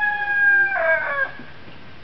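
Rooster crowing: the end of a crow, a long held note that breaks into a short falling final phrase and stops after about a second and a quarter.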